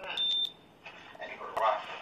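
Muffled, indistinct talk heard through a phone's live-stream recording, with a short high beep lasting about a third of a second near the start.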